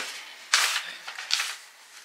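Paper rustling as a card is slid out of a large paper envelope, in two short rustles, about half a second and about a second and a half in.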